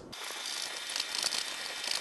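A brush scrubbing inside a two-slice toaster's bread slot to loosen crumbs: a steady brushing hiss of bristles working against the slot.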